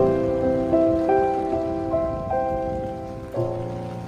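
Piano playing a slow melody, single notes about every half second growing softer, with a chord struck about three and a half seconds in. Steady rain falling on pavement hisses beneath it.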